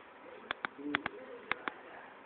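A bird's low, warbling call, with sharp clicks in pairs about half a second apart, the clicks louder than the call.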